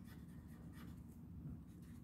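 Faint scratching of a marker pen writing on paper, in a few short strokes.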